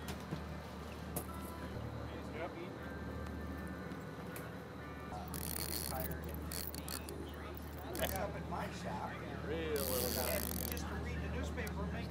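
A steady low drone of the fishing boat's engine running at trolling speed, with faint voices about two-thirds of the way through.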